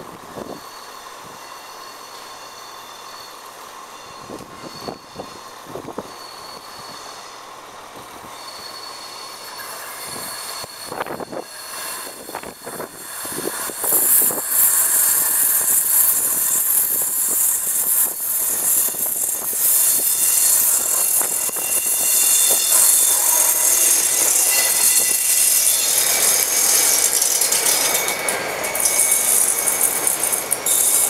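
Class 57 diesel locomotive approaching on a curve, faint at first and growing louder from about ten seconds in, then passing close with its engine working, followed by a long train of container wagons running by with wheels squealing on the curve.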